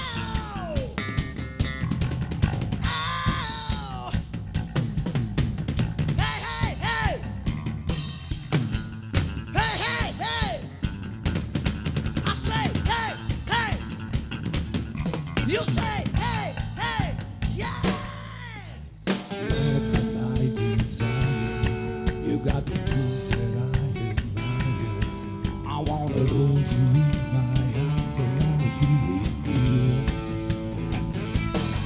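Live rock band playing, the drum kit prominent under guitar. About two-thirds through the sound drops briefly, then the full band comes back in with held guitar chords and heavy bass.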